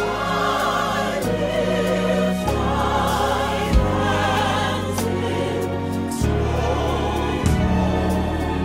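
Gospel choir singing together in harmony, with a violin, bass and a few drum hits underneath.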